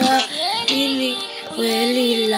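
A high voice singing a song in long held notes, gliding smoothly between pitches with short breaks between phrases.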